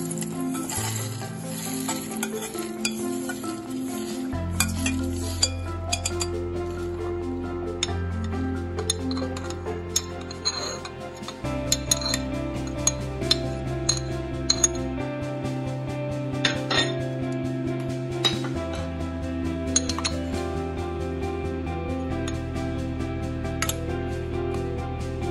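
Background music, over scattered sharp metallic clinks of a spoon and ingredients against a stainless-steel mixer-grinder jar, most of them in the middle stretch.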